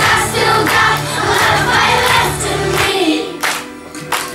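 A class of young children singing together as a choir over musical accompaniment with a steady low bass line. About three seconds in the bass drops out and the sound gets quieter, with a few sharp strokes near the end.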